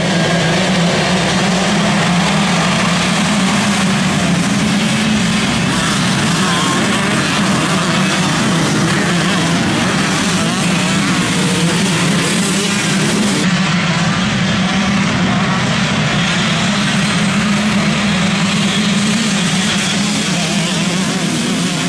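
Many enduro dirt bike engines running and revving at once, merged into one dense, steady mass of engine noise with no single bike standing out.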